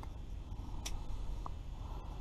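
Quiet low background rumble with one sharp click a little under a second in, while a crappie is being unhooked by hand.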